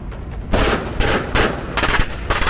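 A volley of gunfire: four loud, sharp shots spaced a little under half a second apart, starting about half a second in.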